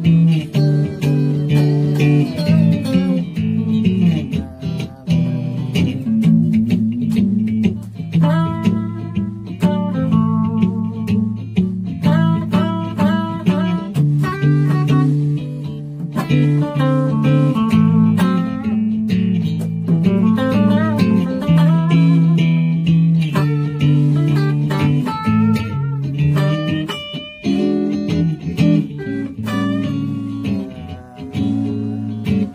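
Two electric guitars jamming on a 12-bar blues progression: a low, repeating chord pattern carries the rhythm while a single-note lead line improvises above it.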